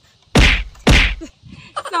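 Two loud, short whacks about half a second apart, each with a deep thud underneath.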